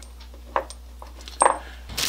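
Steel carriage bolts clinking as they are handled on a workbench: a few light clicks, then a sharper metallic clink with a brief high ring about one and a half seconds in.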